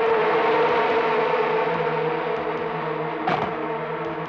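Eerie horror film score: a sustained drone of several steady tones over a hissing swell, with a single sharp hit about three seconds in.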